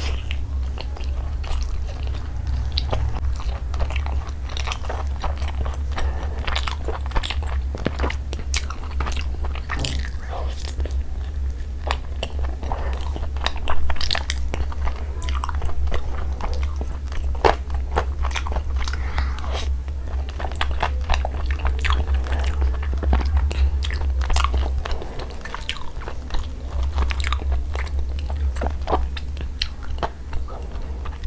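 Close-miked chewing and biting of tandoori chicken: many short wet mouth clicks, with the roasted chicken pulled apart by hand in the later part. A steady low hum runs underneath and drops a little near the end.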